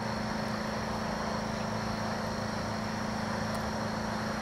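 A steady low machine hum over constant background noise, with no breaks or changes.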